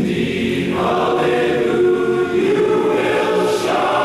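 An eighty-four-voice barbershop chorus singing a cappella in close harmony, holding long chords that change about a second in and again near the end.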